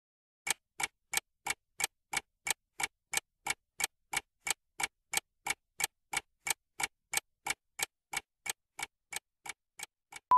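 Clock-ticking sound effect for a quiz countdown timer: sharp, evenly spaced ticks, about three a second, starting about half a second in and running on as the countdown runs out.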